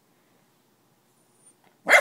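A dog barks once, a single short sharp bark near the end, after a nearly quiet stretch.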